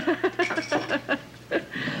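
Women laughing and chuckling in short, broken bursts with a few half-spoken words, trailing off into breathy laughter near the end.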